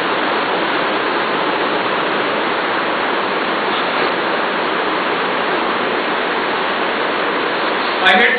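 Steady, loud hiss of background noise with no speech, even and unchanging throughout.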